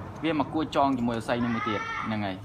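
A voice making short speech-like syllables, then a long, high-pitched, drawn-out cry in the second half that rises and falls.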